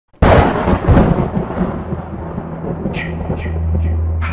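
Thunderclap sound effect: a sudden loud crack about a quarter of a second in, rumbling away over the next two seconds. A low steady drone and a few short sharp hits of an eerie intro music cue then begin.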